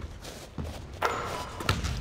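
Basketballs thudding on a hardwood gym floor during a shooting run: a few soft knocks and a firmer thud near the end, with a hissing noise lasting about a second from about a second in.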